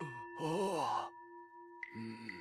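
A man's short wordless, breathy vocal sound in a dubbed cartoon, its pitch rising then falling, over soft background music of steady held tones.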